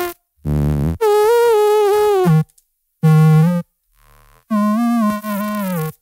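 A sung vocal line resynthesized by a spectral plugin into a saw-like synth tone that follows the melody. It comes as several short phrases with brief gaps between them.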